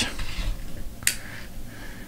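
A sealed hockey card box being cut open by hand: faint handling noise, with one sharp click about a second in as the seal is cut.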